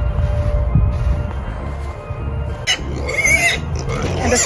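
Low wind rumble on the microphone, then, from about three seconds in, pigs squealing with a wavering pitch.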